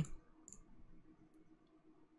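A couple of faint computer mouse clicks over a low, steady room hum.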